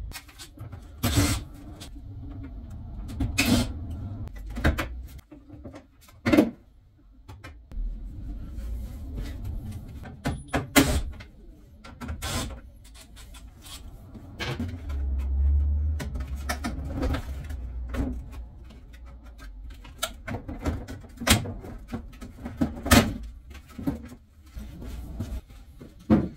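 Scattered sharp clicks, knocks and clunks of hand work on a VW Caddy van's front end as the front bumper is taken off, with a low thud or rumble about halfway through.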